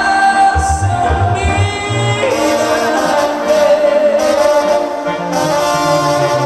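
Tierra Caliente dance band playing live: trumpets and trombones carry the melody over bass guitar, guitar and drums.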